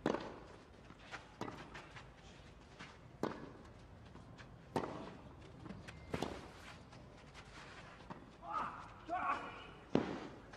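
Tennis ball on a clay court: a scattering of sharp single pops as the ball is bounced and struck with a racket, several seconds apart. A short voice sound comes near the end, just before another strike.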